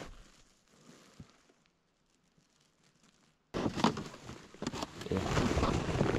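Near silence for about three and a half seconds, then an abrupt start of loud, close rustling of jacket fabric against a chest-worn camera's microphone, with small handling knocks.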